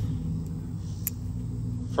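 A low, steady mechanical rumble with a faint hum in it, and one light click about a second in.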